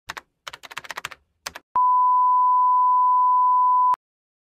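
Keyboard typing clicks for about a second and a half, then a single steady high-pitched beep held for about two seconds that cuts off suddenly.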